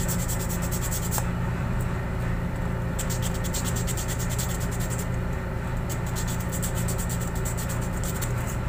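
Steady low machinery hum with a fast, even ticking over it, and hands rubbing and pressing a cut black rubber letter.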